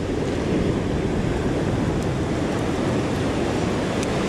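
Ocean surf washing up a sandy beach: a steady, even rush of breaking waves and foam.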